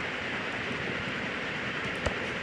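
Steady background hiss of the voice recording's room and microphone noise, with no other sound.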